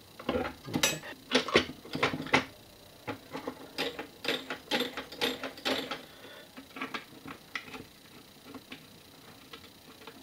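Steel parts of a 1950s–60s one-arm bandit mechanism clicking and clinking as the main control arm is fitted into it by hand. The clicks are irregular, many over the first six seconds and only a few after that.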